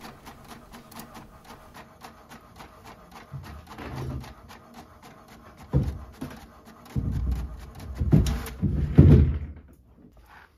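Inkjet printer printing a sheet: a steady run of quick mechanical clicks, several a second, from the print-head carriage and paper feed, with louder whirring strokes in the last few seconds as the printed sheet feeds out. The printer falls quiet just before the end.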